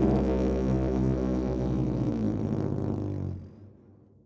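A lone didgeridoo, a moytze-style didge, holding a low steady drone rich in overtones, then fading out over the last half second or so.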